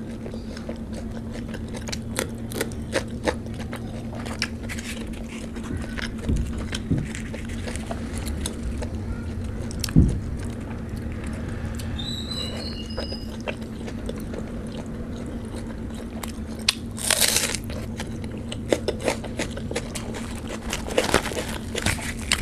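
Close-miked eating of puri (deep-fried bread) dipped in curry: chewing with many small wet mouth clicks and smacks, and a single soft thump about halfway through. Near the end the puri is torn apart by hand with a short tearing rustle.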